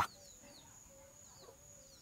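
Faint bird sounds: a few low clucks like chickens and several short, high, falling chirps, over a steady faint high tone.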